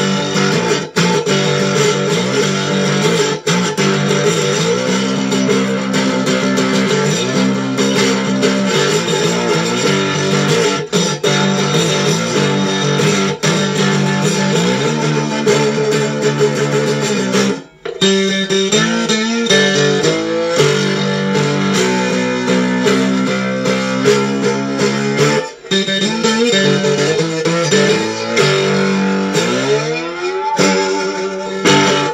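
Homemade gas-can guitar with a piezo pickup under the bridge, played slide-style with a bourbon whiskey bottle through a small ZT Lunchbox amp. Picked and strummed notes glide up and down in pitch between chords. The playing breaks off briefly about halfway through, and a rising slide comes near the end.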